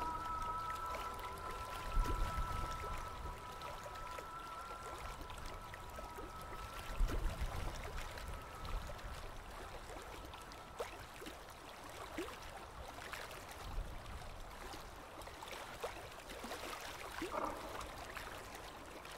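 Hot-spring water trickling and flowing steadily, with a few soft low thumps. Two held tones of ambient music fade out over the first several seconds.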